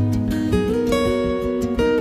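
Background music led by a strummed acoustic guitar, its chords changing every half second or so.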